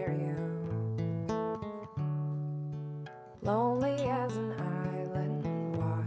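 Solo acoustic guitar strumming chords that ring and fade for the first three seconds, then pick up again. A woman's voice sings a short phrase about three and a half seconds in.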